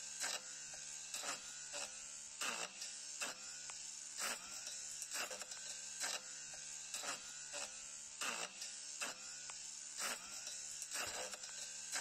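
Battery-operated two-in-one sugarcane harvester and brush cutter running with a faint, steady electric buzz. Its spinning blade strikes the hard sugarcane stubble with a sharp hit every second or so.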